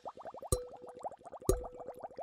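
Cartoon sound effect of rapid bubbly blips, about ten a second. A sharp knock comes about once a second, each followed by a short held tone.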